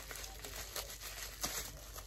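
Bubble wrap crinkling faintly as it is pulled off a small bottle by hand, with a couple of sharper crackles.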